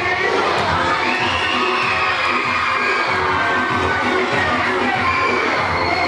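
A crowd of children screaming and cheering, high-pitched and drawn out, over loud dance music with a steady beat.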